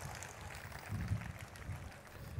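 A pause in a man's talk: faint, steady low background rumble from the stage microphone, with no distinct sound event.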